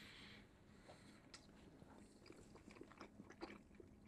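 Near silence, with faint scattered small ticks of eating: forks scraping in bowls of mashed pot pie and quiet chewing.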